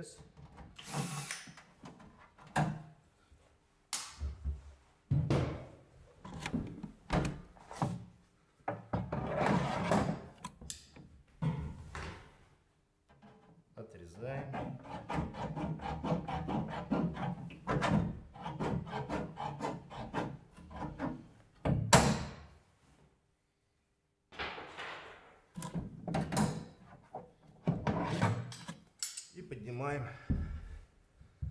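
Irregular handling noise from hand sheet-metal work on steel standing-seam roofing: knocks, rubbing and clatter of the panels and a hand seaming tool against an OSB floor, with one sharp loud knock about two-thirds of the way through.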